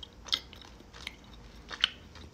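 A person chewing a soft gummy candy with the mouth closed: quiet, with three short faint mouth clicks, about a third of a second in, about a second in, and near the end.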